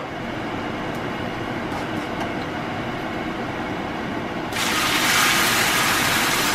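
Whole fennel and nigella seeds sizzling steadily in hot oil in a nonstick frying pan; about four and a half seconds in, tomato puree is poured into the hot oil and a much louder hissing sizzle starts.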